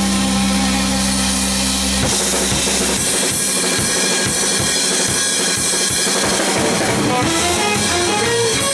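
Loud jazz-rock band music with the drum kit prominent. A sustained low chord gives way about two seconds in to busy drumming with rapid strokes over bass and other instruments.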